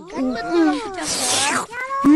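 A cartoon boy's wordless vocal sounds of relish, drawn out and gliding up and down in pitch, with a breathy rush about a second in.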